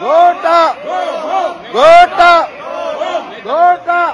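A group of men chanting the slogan "Go home, Gota" in unison. Loud paired shouts come roughly every two seconds, with quieter chanting between them.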